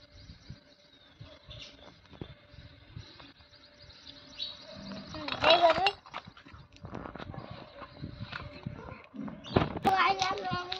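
A child's voice calls out loudly about five seconds in and again just before the end. In between are faint scattered clicks and handling sounds.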